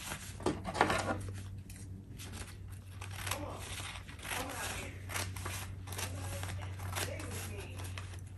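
Scissors snipping through a sheet of mulberry paper (Jen Ho), with the paper crinkling as it is handled: an irregular string of short snips and rustles.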